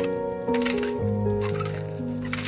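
A salt grinder grinding salt onto food in two short bursts, over background music with a steady melody.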